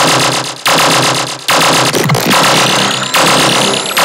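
Riddim dubstep track: harsh, distorted synth bass hits in chopped blocks, each cut off after a second or less, with a thin rising sweep climbing through the second half.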